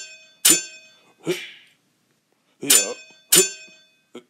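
Sword-fight sound effects: sharp metallic clangs of katana blades clashing, ringing briefly, one about half a second in and two close together near the end, mixed with a fighter's grunts.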